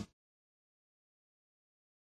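Silence: the music and commentary cut off at the very start, and nothing follows.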